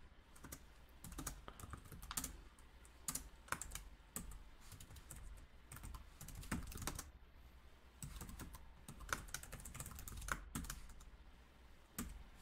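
Typing on a computer keyboard: faint, irregular runs of keystroke clicks with short pauses between them, over a steady low hum.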